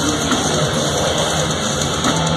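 Thrash metal band playing live at full volume: distorted electric guitars, bass and drums merged into one dense, continuous wall of sound.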